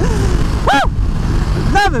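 Ducati XDiavel's V-twin engine running steadily at highway speed, with wind rush on the helmet microphone. A short high vocal whoop comes about a second in, and a laugh near the end.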